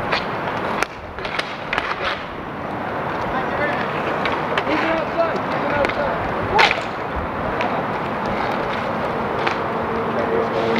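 Inline roller-hockey skate wheels rolling on a hard outdoor rink surface, with sharp clacks of sticks striking the puck and each other scattered through, the loudest about two-thirds of the way in.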